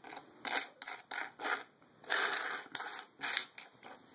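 Handling noise from the camera itself: a run of about seven short scratchy rubs as the camera body or lens is gripped and moved.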